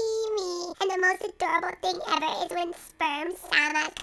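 A high-pitched, childlike sing-song voice, with long held notes that slide up and down in short phrases.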